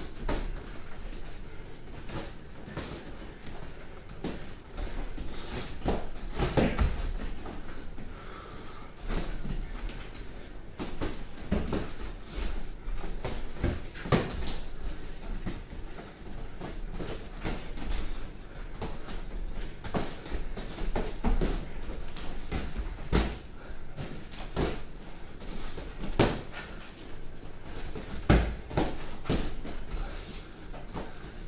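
Boxing gloves landing punches during sparring: irregular sharp impacts, a few much louder than the rest.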